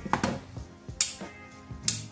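Sharp metallic taps on a graphics card's removed metal backplate, two clear ones about a second apart near the middle and end. They sound like metal, which he takes for aluminum.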